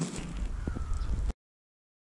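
Low rumble and rustling handling noise on a body-worn microphone outdoors, with a few faint knocks. It cuts off abruptly to dead silence about two-thirds of the way in.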